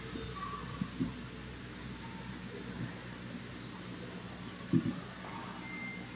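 A steady, high-pitched electronic tone starts about two seconds in, steps down slightly in pitch a second later, and then holds. Faint low knocks sound underneath, one near the start and one near the end.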